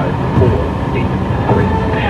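Steady road and tyre rumble inside a moving car's cabin, with a radio voice from the car speakers coming through in places.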